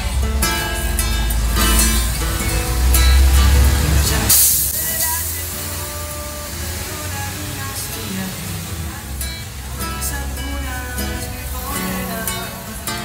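A man singing in Spanish to his own strummed acoustic guitar. About four seconds in, a brief hiss sweeps through and the low rumble under the music falls away.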